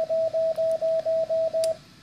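Morse code sidetone from an electronic CW keyer: a run of about eight dashes at one steady pitch, about four a second, sent automatically while the dash side of an iambic paddle is held. It stops shortly before the end.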